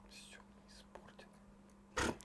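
Faint whispering, briefly in the first second, over a steady low electrical hum.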